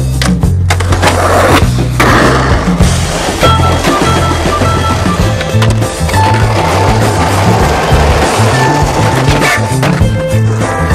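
Skateboard sounds under music with a heavy bass line: sharp clacks of the board popping and landing in the first two seconds, then urethane wheels rolling over pavement.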